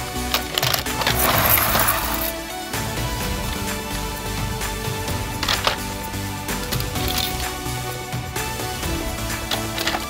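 Background music with a steady tune, over the clatter of hard plastic toy vehicles being rummaged and picked out of a plastic basket, loudest about a second or two in, with a few sharp knocks later.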